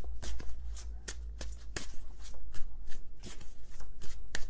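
A deck of tarot cards being shuffled by hand: a quick, irregular run of card clicks and flicks, several a second.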